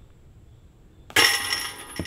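A thrown disc hits the steel chains of a disc golf basket about a second in: a sudden metallic crash, then the chains jingle and ring as they die away.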